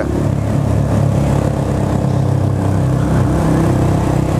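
Yamaha Fazer 250's single-cylinder engine running at a steady highway cruise under wind and road noise, its pitch rising a little about three seconds in.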